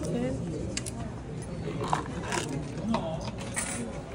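Indistinct talk at a shop counter, with a few small clicks and scrapes from items being handled on the glass counter.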